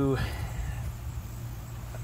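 Carbureted V8 with twin four-barrel carburetors idling steadily as a low, even rumble, running without stalling now that its vacuum leaks are sealed.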